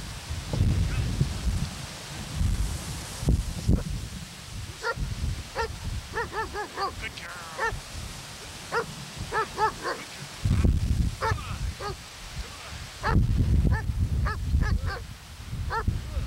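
A puppy yipping in short, high-pitched barks, in quick runs of two to four at a time, over bursts of low rumble on the microphone.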